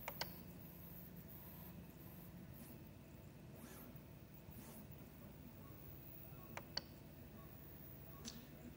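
Near silence over a faint steady hum, broken by a few short clicks of the Prusa MK3S's control knob being pressed: one right at the start and two in quick succession near the end.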